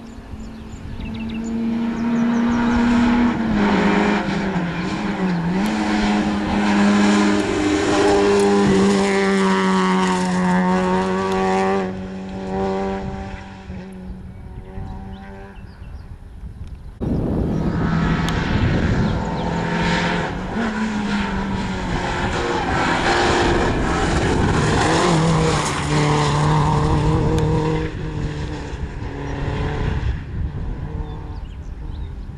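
Rally car engine at high revs on a tarmac stage, the revs rising and dropping repeatedly as it comes through, then fading away. After an abrupt cut about halfway, a rally car engine is loud again, revving up and down before easing off near the end.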